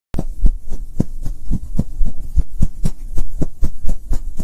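Intro soundtrack made of a steady pulse of deep thumps, about four a second, over a low hum.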